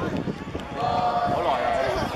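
Children's and adults' voices talking and calling out, with one drawn-out voiced call in the middle.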